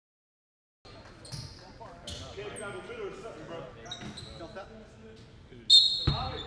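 Basketball gym ambience at low level: a ball bouncing on the hardwood court and people talking in the hall, with irregular knocks, then a sharp, louder hit near the end.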